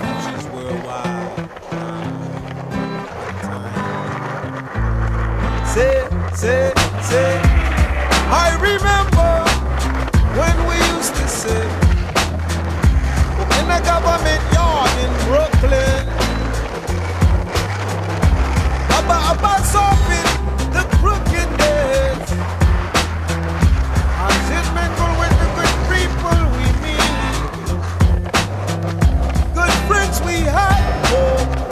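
Music with a heavy bass beat that kicks in about five seconds in, over skateboard sounds: urethane wheels rolling on concrete and the sharp clacks of the board on tricks and landings.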